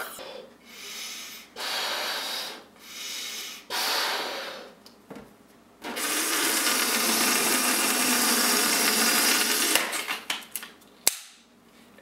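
A rubber balloon being blown up by mouth in four long puffs, then air hissing steadily out of its neck for about four seconds as it is let down, followed by a few sharp rubbery clicks.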